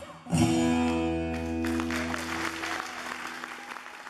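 A final strummed chord on an acoustic guitar, ringing out. Audience applause breaks in about a second and a half in and fades near the end.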